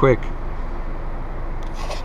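Steady engine and road noise inside the cabin of a Chevrolet Camaro convertible with its soft top up while it is being driven: an even low hum with no change in pitch.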